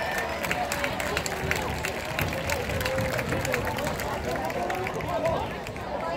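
Crowd chatter in the stands with scattered, irregular hand claps.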